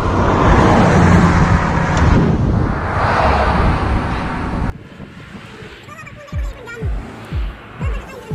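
Loud, steady roadside noise of passing traffic and wind for the first half. A little over halfway in it cuts off abruptly to background music with a thumping beat, about two beats a second.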